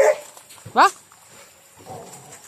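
German Shepherd dog giving two short, high barks, one at the start and another just under a second in, each rising sharply in pitch.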